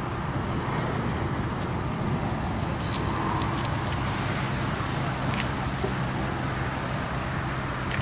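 Steady rumble of motorway traffic with a constant low hum underneath.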